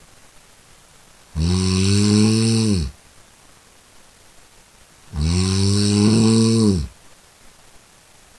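A person snoring: two long snores about four seconds apart, each about a second and a half, dropping in pitch as it ends.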